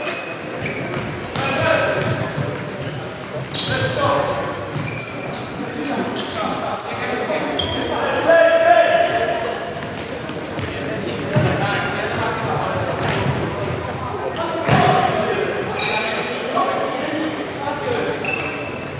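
Futsal match play in a reverberant sports hall: ball kicks and bounces on the wooden floor, short high squeaks of players' shoes, and players' shouts.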